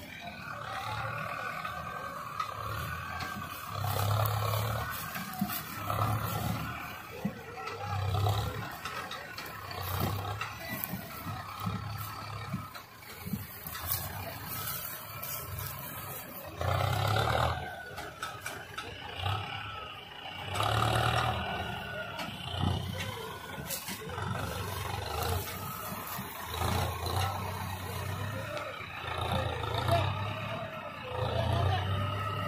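Farm tractor's diesel engine running under load as it pulls a trailer full of cut sugarcane across the field, its low rumble swelling and easing every couple of seconds.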